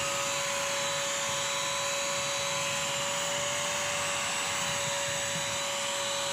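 Bissell CrossWave wet/dry vacuum running, its motor holding a steady whine with an even suction rush as it scrubs and picks up spilled milk and dry cereal.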